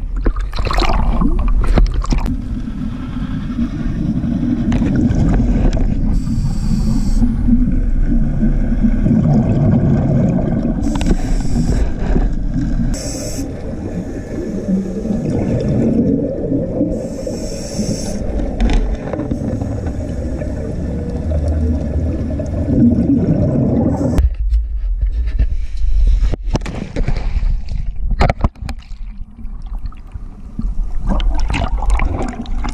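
Muffled underwater sound of scuba divers' exhaled regulator bubbles, a dense low rumbling and gurgling, with a few short higher hisses. The sound grows thinner and patchier in the last few seconds.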